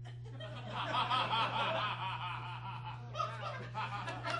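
A theatre audience laughing, swelling about half a second in and dying down after about three seconds, over a steady low hum.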